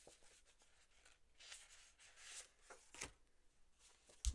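Faint rustling and sliding of sheets of 6x6 patterned card-weight paper being shuffled in the hands, with a light tap about three seconds in.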